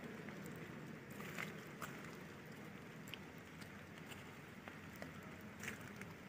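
Faint, steady outdoor background noise with a few scattered soft clicks, one each about 1.5, 2, 3 and near the end.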